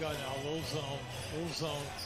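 Basketball game broadcast audio at low level: a TV commentator talking over arena crowd noise.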